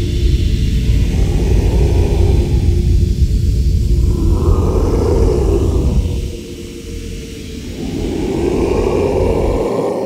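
Live choir of growling voices holding a low, rumbling drone that rises and falls in slow swells. The low rumble drops away about six seconds in, then a new swell builds near the end.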